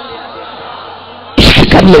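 A man's amplified preaching voice, low at first, then about one and a half seconds in breaking into a sudden loud shout that overloads the sound system into harsh distortion.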